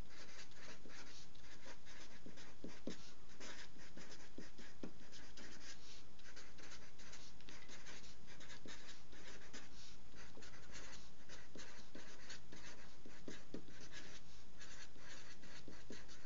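Marker pen writing on paper: many short scratching strokes as words are written out by hand.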